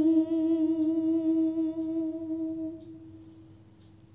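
A woman's unaccompanied voice holds one long, steady note of a devotional song, fading out about three seconds in.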